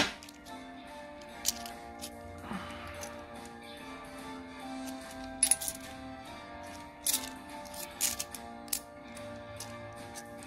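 2-euro coins clinking sharply against one another as they are handled one by one from a stack in the hand, about a dozen scattered clicks. Quiet background music plays underneath.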